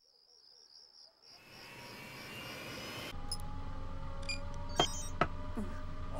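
A faint, high pulsing trill, then an F-Zero racing machine starting up: a hiss and a whine that rise over about two seconds. About three seconds in it gives way to a steady low electronic hum, heard from inside the cockpit, with a few short clicks and beeps.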